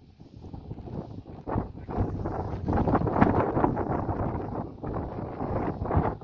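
Wind buffeting the microphone in gusts, building after about a second and strongest in the middle, a low rumbling rush.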